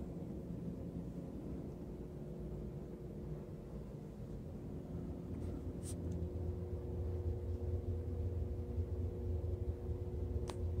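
Steady low hum and rumble of room tone, with two faint constant tones, growing slightly stronger in the second half, and a brief click about six seconds in.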